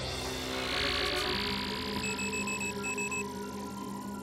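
Electronic sci-fi sound effects for a cartoon robot's targeting display: held synthesizer tones under a rising hiss sweep, with a run of quick, evenly spaced high beeps about two seconds in.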